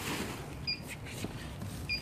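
A short, high electronic beep repeating about once every second and a bit, over faint handling noise and a few light clicks.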